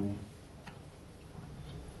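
A pause in a man's speech: quiet room tone with a low steady hum and one faint click less than a second in.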